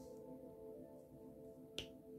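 Faint background music of sustained, ringing tones, with one sharp click near the end as the diamond painting pen taps a drill onto the canvas.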